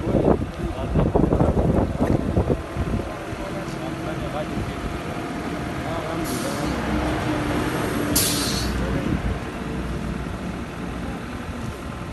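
Voices for the first few seconds, then a vehicle engine running steadily nearby, with two short hisses of air about six and eight seconds in, the second louder and sharper.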